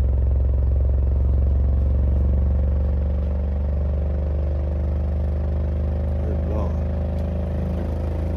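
Earthquake Tremor X124 12-inch subwoofer playing free air, with no enclosure, at the start of a slow test-tone sweep from 20 Hz toward 50 Hz. It makes a loud, steady, deep drone with a stack of overtones above it, easing slightly about three seconds in.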